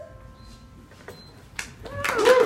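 The last held note of a song sung to a digital piano stops right at the start. A quiet pause follows, with a couple of faint sharp clicks. Near the end the sound swells as the audience's applause and cheering begin.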